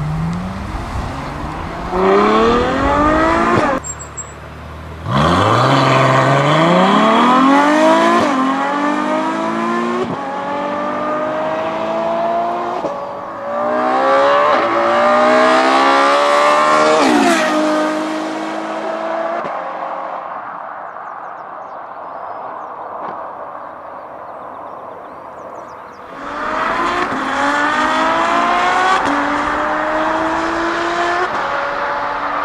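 Ferrari F12's V12 engine accelerating hard in a series of flyby passes, the note rising through each gear and dropping back at the upshifts, then fading as the car pulls away. The first pass is with the exhaust valves still working as stock.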